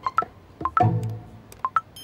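Playful plucked-string background music, with short high beeping notes in quick pairs between the plucks. A bright chime starts right at the end.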